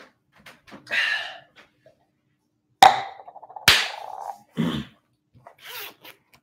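Household knocks and handling noise: two sharp bangs about a second apart, each with a short ring, then a duller thud and rustling as a person moves back in front of the camera.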